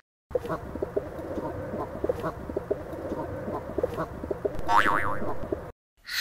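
Pigeons cooing, played as a sound effect: short calls scattered over a steady low background noise, growing louder near the end with a brief rising call about five seconds in.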